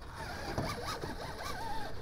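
Axial SCX-6 Honcho RC rock crawler's brushless sensored Spektrum motor and drivetrain whining, the pitch rising and falling as the throttle is worked, with a rasping scrape of the truck against rock while it is wedged in a crack.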